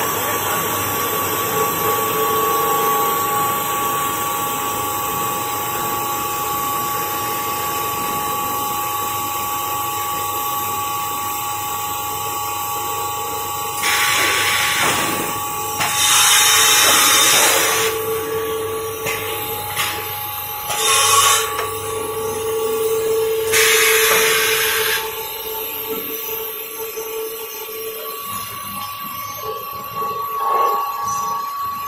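Pulp egg tray forming machine running with a steady hum and two held tones. In the second half come four loud bursts of hissing air, one as the forming and transfer moulds press together.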